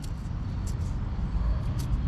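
Outdoor background noise: a steady low rumble with a few faint, light ticks.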